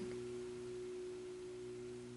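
Soft background music: a sustained chord of a few steady, pure tones, slowly fading away.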